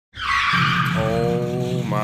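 A 1999 GMC Sierra 1500's 5.3-litre V8 running with a steady low drone and a bottom-end rod knock, the sign of a failing rod bearing. A hiss sounds over it for the first second.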